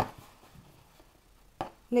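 Hands quietly handling a crocheted yarn piece on a tabletop: soft fabric handling with a short click about one and a half seconds in.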